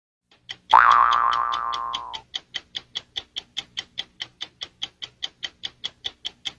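Fast clock ticking, about five ticks a second, as a produced intro sound effect. A loud ringing boing opens it, swooping up in pitch and then fading away over about a second and a half.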